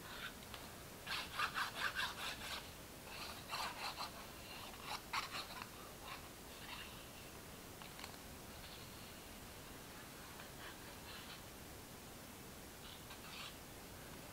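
Faint scratching and rubbing of a fine-tip liquid glue bottle's nozzle dragged along cardstock as glue is laid down. It comes in a few short bursts of quick strokes in the first half, then only a few light taps.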